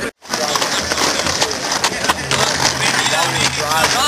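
Skateboard wheels rolling over rough concrete pavement, a steady rough rumble with scattered clicks, with people talking faintly in the background.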